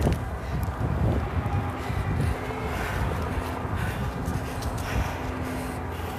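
Low, uneven rumble of wind and handling on a hand-held phone microphone while walking outdoors, with a faint steady hum starting about a second and a half in.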